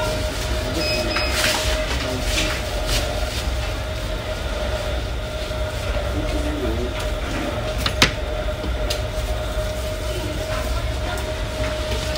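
Restaurant room sound: a steady low rumble and a constant hum of machinery, with a few scattered clicks of chopsticks and tableware, one sharp click about eight seconds in.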